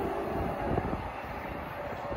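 Amtrak passenger train rolling away, its rumble slowly fading as the last car recedes down the track, with a few faint knocks of wheels over the rails.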